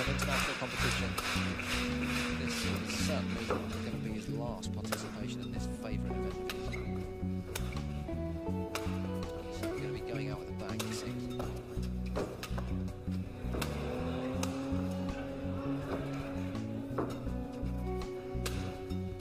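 Background music with a steady beat and a stepping bass line, with a few sharp clicks over it.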